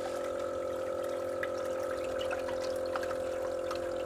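Julabo ED immersion circulator running: its circulation pump motor gives a steady hum while stirring the water bath, with a light trickling and churning of water.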